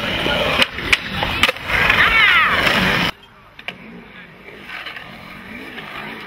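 Skateboard wheels rolling on concrete, with several sharp clacks of the board in the first second and a half, then a loud, wavering high-pitched sound. After a sudden cut about three seconds in, a quieter skateboard rolls and carves in a concrete bowl, the wheel noise rising and falling.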